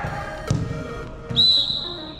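A sports whistle blown in one steady, sharp blast starting past the middle and held to the end, the loudest sound here, over background music; a single thud about half a second in.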